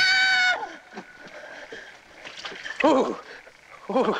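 A woman's high-pitched scream, held for about half a second and falling off at the end, at the very start. A short wordless vocal cry follows about three seconds in.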